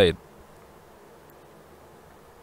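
A man's speech breaks off in the first moment, followed by a pause with only faint, steady background noise.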